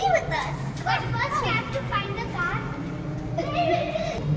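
Children's voices calling and chattering as they play, high-pitched and excited, with no clear words.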